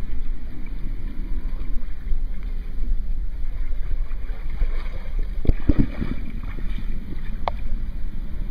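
Wind rumbling steadily on the microphone while a person wades through waist-deep pool water. There are sharper splashes and sloshing about five and a half to six seconds in as she reaches the ladder and climbs out.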